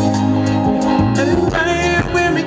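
Live R&B band music: sustained chords over bass and drums, with a male voice coming in about halfway through on a held, wavering sung note.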